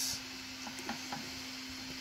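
A few faint, light clicks of a circuit board being handled and set against a display's metal standoffs, over a steady low hum.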